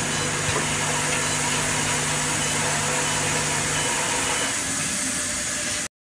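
10 ml eye drop filling and capping machine running: a steady mechanical hum with a hiss over it. One low humming tone drops out about four seconds in, and the sound cuts off abruptly near the end.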